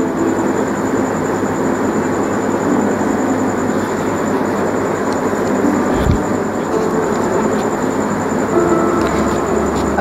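Steady shop background noise: a dense, even murmur and rumble with faint music in it and a thin high whine throughout.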